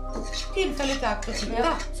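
Cutlery and dishes clinking at a meal table, over background music with long held notes.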